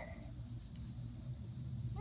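Insects trilling steadily in one high, unbroken band, with a faint low hum beneath.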